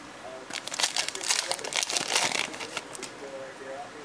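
A Topps Fire football card pack's wrapper crinkling as it is torn open by hand, a dense burst of crackling from about half a second to nearly three seconds in.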